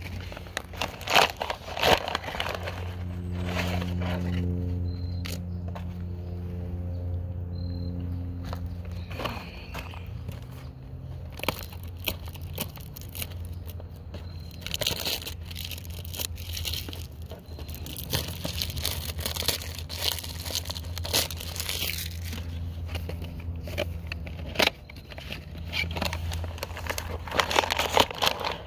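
Paper tea-bag wrappers crinkling and tearing, with scattered sharp clicks and handling noises, over quiet music with a steady low hum and held notes in the first half.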